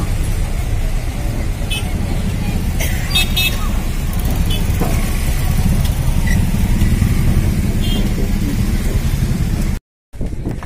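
Steady low rumble of vehicle engines on a crowded ro-ro ferry deck, with background chatter from the crowd. A few short horn beeps come about three seconds in. The sound cuts off suddenly just before the end.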